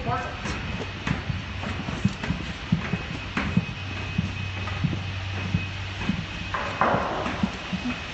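Footsteps of several people walking along a narrow aisle between the aircraft's tanks: irregular knocks and clicks on the floor panels.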